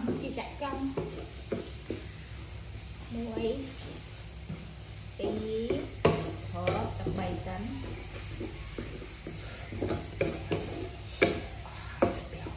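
A wooden spatula stirs and scrapes food around a metal pot over a light sizzle of frying, with several sharp knocks as it strikes the pot.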